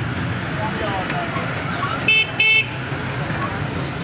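A vehicle horn sounds two short toots about two seconds in, over the steady noise of busy street traffic.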